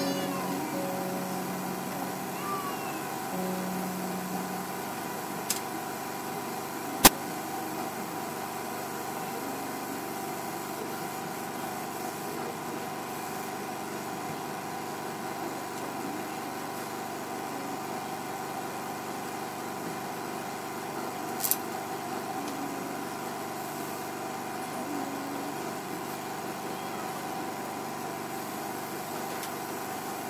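Steady background hiss and hum of a service recording between songs, with a few sharp clicks; the loudest click comes about seven seconds in. Faint held musical notes die away in the first few seconds.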